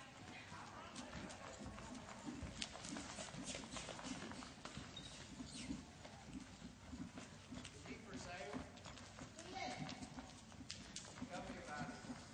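Faint hoofbeats of a horse moving at speed on soft arena dirt, a steady run of dull strikes, with faint voices in the background.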